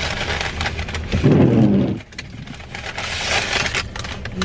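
Paper takeout bag crinkling and rustling as it is opened and rummaged through, with a brief louder low sound about a second in.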